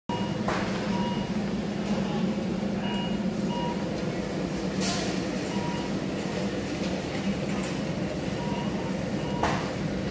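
Supermarket ambience: a steady low hum with short electronic beeps at irregular intervals and three sharp clatters, the loudest about halfway through.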